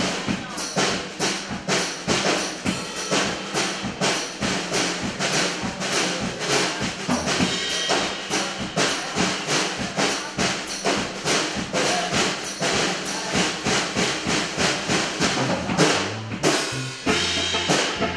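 Live band playing an instrumental passage, led by a drum kit with a fast, steady beat over bass guitar and keyboard.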